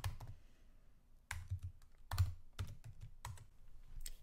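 Computer keyboard being typed on: a few keystrokes at the start, a pause of about a second, then a run of about eight keystrokes.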